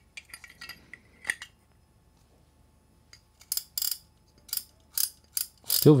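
Clicker of a Shimano Talica 16IIA Gen 2 lever-drag reel, in its plastic housing, clicking as the mechanism is turned by hand. A few faint clicks in the first second and a half, then a pause, then a run of louder, separate clicks: still very audible despite the plastic housing.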